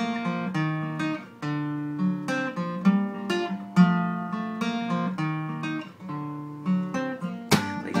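Acoustic guitar played on its own, a steady run of distinct notes and chords. A man's singing voice comes back in right at the end.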